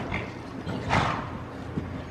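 Hoofbeats of a horse cantering on the sand footing of an indoor arena, with a short louder rush of noise about a second in.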